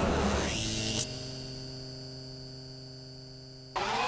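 Electronic hum sound effect: a short noisy swell, then a steady drone of several held tones that slowly fades and cuts off suddenly near the end.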